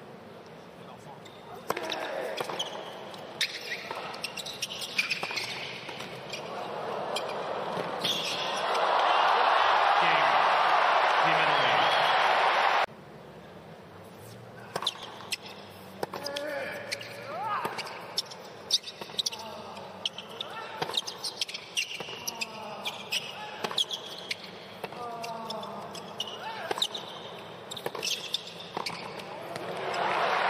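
Tennis rallies: sharp pops of racquet strikes and ball bounces at irregular intervals. A crowd cheers and applauds loudly from about eight seconds in, breaking off suddenly about thirteen seconds in, and then another rally of strikes follows.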